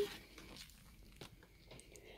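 Faint crinkling and handling of a plastic food tray being picked up, a few soft ticks over quiet room tone.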